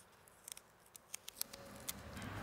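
Beige toe tape being handled and wrapped around a dancer's toe: a few faint, sharp, scattered clicks and crinkles.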